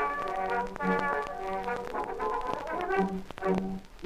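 Instrumental break between verses of the song: a brass melody over a steady bass and beat, with no singing.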